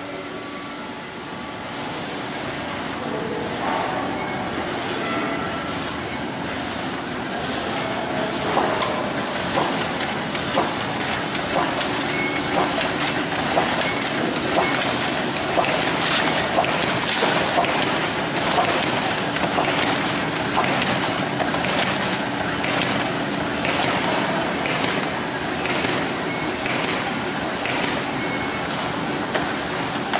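HTH-120G automatic horizontal cartoning machine running, with a steady clatter of many sharp mechanical clacks over a constant high-pitched whine.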